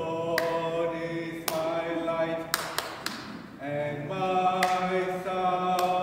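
A male cantor singing a responsorial psalm in church. He holds long notes that step up and down in pitch, with a short break for breath about three seconds in.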